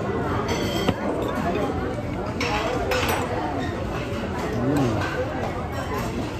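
Steady restaurant chatter from other diners, with metal cutlery clinking on a china plate and one sharp clink about a second in.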